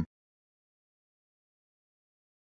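Dead silence: nothing is heard after the narrating voice stops at the very start.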